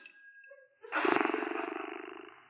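A live stage sound effect: a sudden noisy, buzzing burst about a second in that fades away over about a second, preceded by a short faint tone.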